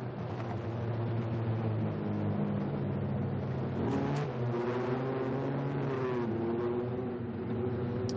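Engines of Can-Am side-by-side race UTVs running hard, their pitch shifting up and down as they accelerate and back off, with one rising rev about halfway through.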